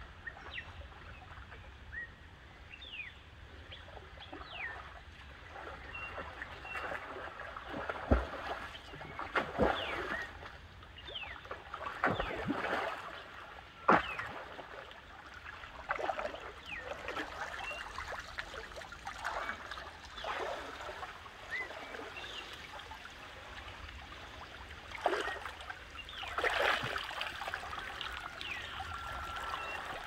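Water splashing from a swimmer's strokes in a river: irregular splashes and sloshes, with a few sharper ones.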